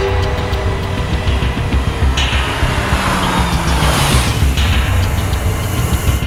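Dramatic background music with a heavy low pulse, and a car approaching along a road. A rushing swell of noise comes in about two seconds in and cuts off sharply a little after four seconds.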